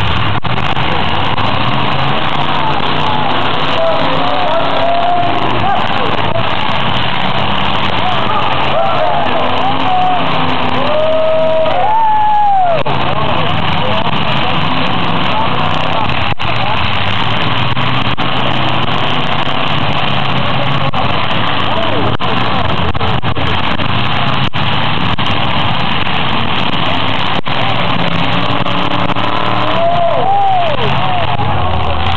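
Demolition derby cars' engines running and revving loud and rough, with a crowd shouting and cheering over them and a few sharp bangs in the second half.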